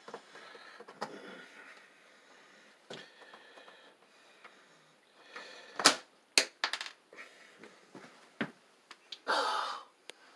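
Small sharp clicks and taps of a screwdriver and screws against a metal switch plate and the switches, scattered through the quiet, the loudest a pair about six seconds in. A breathy rustle follows near the end.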